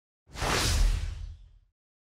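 A whoosh sound effect: one rush of noise, deep rumble and high hiss together, that swells in quickly and fades away about a second and a half in.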